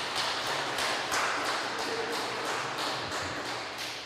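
Low room noise in the church hall with light, scattered tapping and a brief faint voice partway through, slowly fading.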